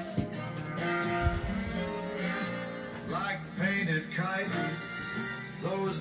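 A recorded song plays as background music: an instrumental passage between sung lines, with a male voice coming back in at the very end.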